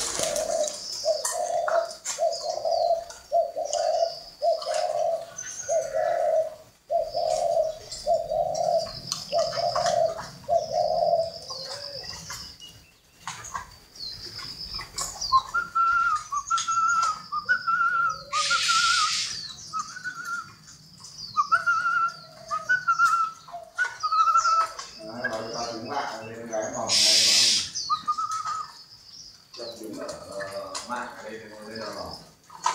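Caged spotted doves cooing: a run of about ten low coos, roughly one a second, over the first eleven seconds, with small birds chirping high throughout. From about the middle on, a different repeated, higher-pitched call takes over.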